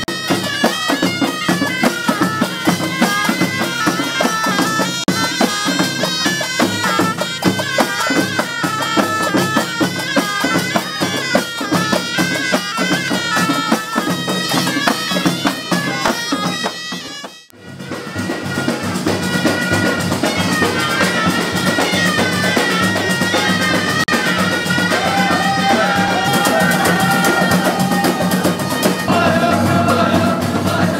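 Moroccan folk troupe: ghaita reed pipes play a shrill, wavering melody over a fast beat on frame drums and jingle-rimmed tar drums. The music drops out for a moment about two-thirds of the way through, then the drumming carries on with men's voices singing along.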